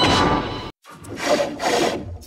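A logo's music tails off and cuts out abruptly, then two short scratchy, rasping sound effects follow about half a second apart.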